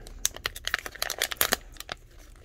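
Black foil grab-bag pouch being opened by hand, its stiff packaging crinkling in a rapid, irregular run of sharp crackles and clicks.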